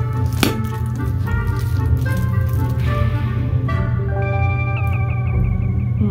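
Background music: held notes over a steady low bass, with a short run of quickly repeated notes near the end.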